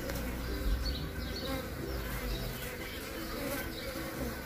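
Mandaçaia stingless-bee drones buzzing in flight around a queen, a steady hum that wavers a little in pitch, over a low rumble.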